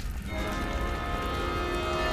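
Fire sound effect of a burning building: a steady crackling rumble, joined a moment in by a held chord of background music. Both cut off suddenly at the end.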